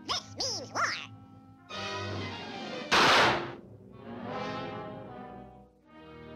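Cartoon orchestral score with a single loud firecracker-style explosion about three seconds in. In the first second there are quick whistle-like glides rising and falling. After the blast the music swells and fades away.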